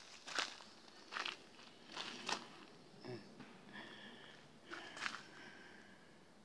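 About five crunchy footsteps on dry forest-floor litter as a person walks up, with a faint, steady, high-pitched call in the background around the middle.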